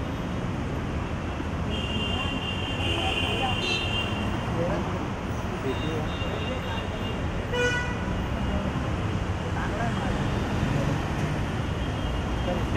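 Steady street traffic noise with vehicle horns tooting a few times, the longest about two seconds in and a short sharp one about halfway through, over faint voices.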